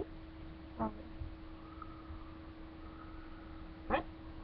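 Quiet room tone with a steady low hum, broken by a short vocal sound about a second in and another brief one at the very end.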